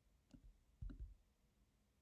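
Two faint computer mouse clicks about half a second apart, made while dragging to rotate a molecule model on screen.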